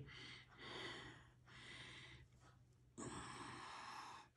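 Near silence: room tone with a low steady hum and a few faint, soft hissy sounds, the last starting sharply about three seconds in.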